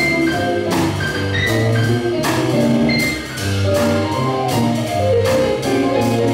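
Small jazz combo playing live: electric keyboard and hollow-body electric guitar over a walking bass line and drum kit, with cymbal strikes every second or so.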